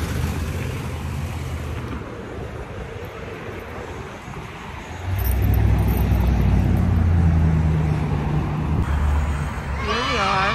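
Wind rumbling on a phone's microphone, mixed with road traffic. About five seconds in, a louder low rumble sets in and holds.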